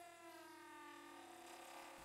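Near silence, with a faint pitched hum that drifts slightly lower in pitch.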